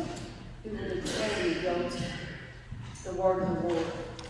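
A woman's voice reading aloud over a microphone.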